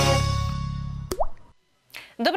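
Intro jingle music dying away, ended about a second in by a single water-drop plop sound effect that rises quickly in pitch, followed by a brief moment of silence.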